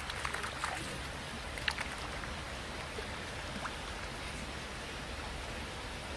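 Steady rushing hiss of water, with a few faint small clicks and rustles in the first few seconds.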